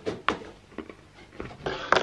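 Biting into and chewing a crisp biscuit: a few short crunches, the loudest near the end.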